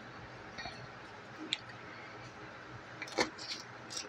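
Faint kitchen handling sounds while garlic is prepared at the counter: a few isolated small clicks and taps, then a short cluster of clicks about three seconds in.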